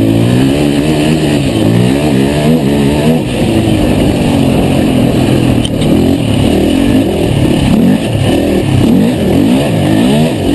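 Engine of a 450 cc four-stroke single-cylinder racing quad under hard riding, its pitch rising and falling again and again as the throttle opens and closes. Heard from a camera mounted on the machine.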